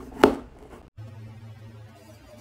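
A single sharp chop of a kitchen knife coming down onto a plastic cutting board, about a quarter second in. It is followed by a steady low hum.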